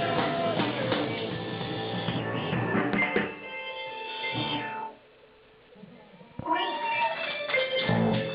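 Live punk rock band playing loudly, breaking off about three seconds in; a few held tones linger and fade, there is a short near-silent gap, and the band's music starts again about six and a half seconds in.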